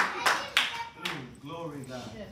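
Hand claps, about three or four in the first second and then dying away, under faint voices.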